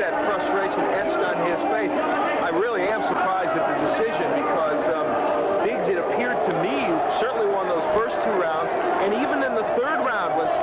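Arena crowd noise: many voices shouting and calling at once in a dense, unbroken din.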